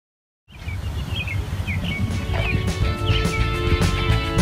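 Birds chirping in a quick series of short high calls over a low rumble. About three seconds in, background music with held notes comes in.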